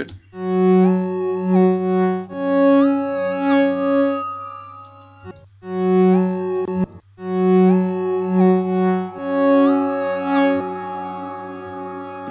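Additive synth patch in Logic Pro X's Alchemy playing a short repeating phrase of bright, buzzy notes, played twice, their upper harmonics stepping and gliding in pitch. It runs through a wave shaper and a pitched convolution reverb that lays a steady low drone underneath, and the phrase ends on a held tone.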